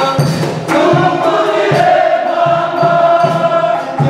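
A choir singing together in long held notes over a regular drumbeat.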